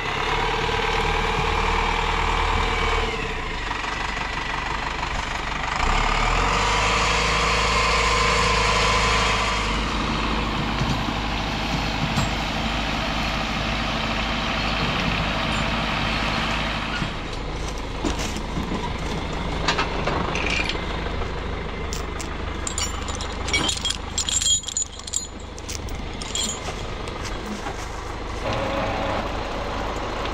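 A tractor's diesel engine running steadily, getting louder about six seconds in and easing back around ten seconds. From about the middle on the engine sits lower and is broken by scattered sharp knocks and clatter.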